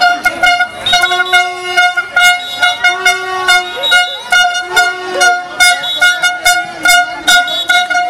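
Handheld plastic horns tooting over and over in short blasts on one pitch, many in a row, with a lower horn note held briefly now and then.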